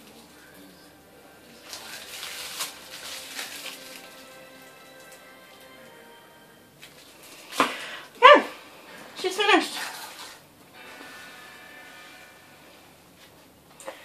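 Faint background music, with a rustling noise about two seconds in and two short, loud calls that fall in pitch about eight and nine and a half seconds in.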